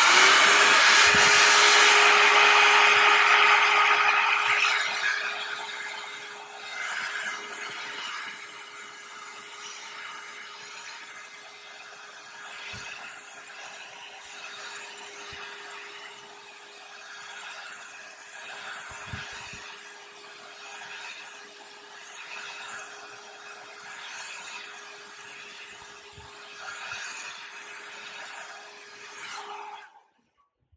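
Hair dryer running on its hotter heat setting, a steady blowing noise with a constant hum. It is loud for the first few seconds, then quieter and rising and falling as it is swept back and forth over the work, and it is switched off at the end.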